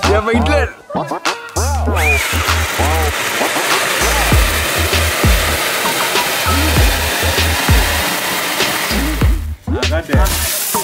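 Background hip-hop music with a steady beat, over a loud continuous hiss of a flower-pot firework fountain spraying sparks from about two seconds in until shortly before the end.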